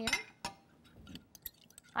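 Glass kitchenware and utensils clinking lightly while batter ingredients are stirred and poured: one sharper clink about half a second in, then a few faint ticks near the end.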